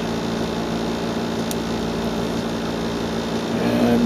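Steady electric fan hum, several low tones held level over a soft whoosh, with one faint click about a second and a half in.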